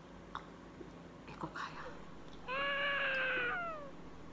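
A single drawn-out, high-pitched cry lasting just over a second, holding its pitch and then sliding down at the end, after a few faint clinks and small mouth sounds.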